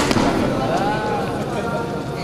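A badminton racket strikes the shuttlecock with a sharp crack right at the start as the rally ends. About half a second later a voice calls out once, its pitch rising and then falling.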